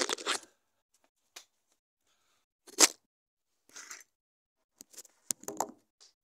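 Handling noise from a phone being moved and set down: a few short knocks and rustles, the loudest a sharp knock about three seconds in, with a cluster of small clicks and rustles near the end.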